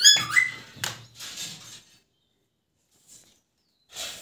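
An Alexandrine parakeet gives one short, loud squawk at the start, followed by about a second of rustling and scuffling as it moves about.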